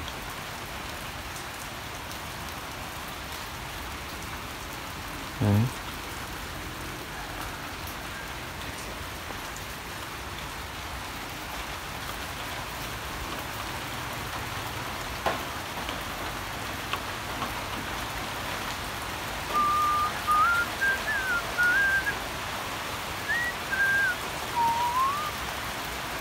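Steady rain falling. Near the end comes a run of short high whistled notes that step up and down in pitch.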